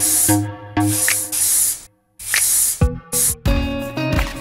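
Aerosol spray paint cans hissing in about four short bursts as paint is sprayed onto water, over background music.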